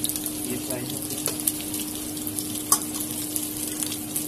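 Potato pinwheels sizzling and crackling as they fry in hot oil in an aluminium wok, with clicks of a metal spatula against the pan as they are turned, one sharper than the rest about two-thirds through. A steady hum runs underneath.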